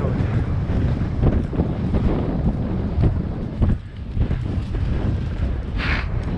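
Wind buffeting the microphone of a rider's head camera on a horse moving at speed, with the dull thuds of hooves on a dirt track underneath. The rushing dips briefly a little past the middle.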